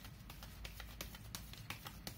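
Deck of tarot cards being shuffled overhand by hand: a faint, irregular run of soft card clicks, several a second.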